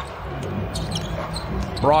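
A basketball being dribbled on a hardwood court, a few soft knocks over the low steady hum of a near-empty arena.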